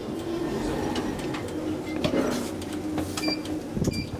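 ThyssenKrupp traction elevator car in operation: a steady low hum with scattered clicks and rattles, a brief high tone about three seconds in, and a sharp thump near the end.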